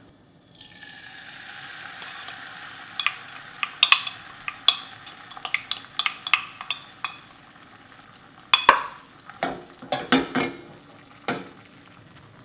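Beaten egg yolk poured into a hot nonstick frying pan, sizzling softly at first and fading as it cooks on the pan's leftover heat with the burner off. A wooden utensil taps and scrapes the pan as the egg is spread thin, with a few louder knocks of pan and utensil near the end.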